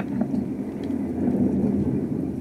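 A steady low rumble with a few faint clicks: a background layer of battle ambience added to the stop-motion soundtrack.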